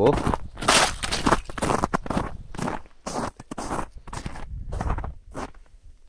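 Footsteps crunching on the ice and frozen snow crust at the edge of a frozen river, an irregular run of steps that becomes sparser in the second half.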